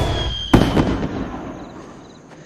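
Fireworks bursting overhead: a loud bang about half a second in, dying away over the following second.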